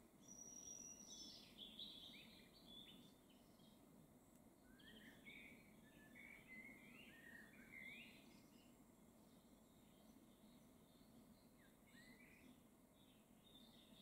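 Near silence with faint songbirds chirping in the distance, short calls and trills scattered through the first half and once more near the end.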